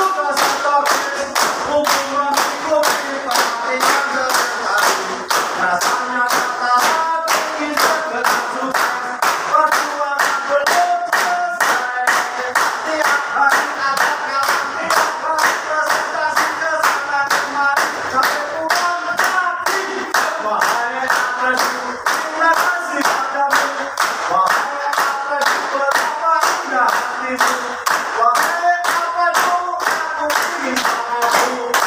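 A group of people singing together while clapping their hands in time, about two claps a second, steady throughout.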